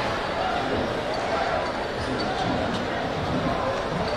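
Stadium crowd chatter, a steady mix of many distant voices, with a few light thuds.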